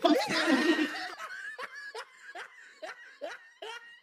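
A person laughing hard: a loud burst of laughter at first, then a run of short, breathy laugh pulses about two to three a second that grow fainter.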